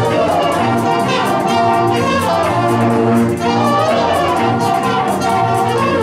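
A jazz big band playing live in full ensemble: trumpets and trombones over saxophones, with a steady beat.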